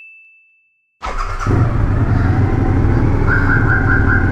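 A single high ringing ding fades out, followed by a moment of silence. About a second in, a Suzuki V-Strom's V-twin motorcycle engine cuts in, idling steadily, with a short run of rapid high beeps near the end.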